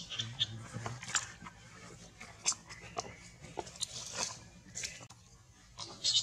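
Baby macaque squirming on dry leaf litter: scattered short scuffling clicks, with a few brief, faint high squeaks.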